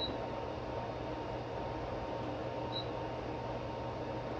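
Steady whir of lab test-instrument cooling fans, loud in the room, with two short high beeps from the oscilloscope's front-panel keypad: one at the start and one nearly three seconds in.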